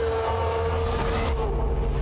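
Film trailer soundtrack: a steady low rumble under a single held tone that fades out about a second and a half in.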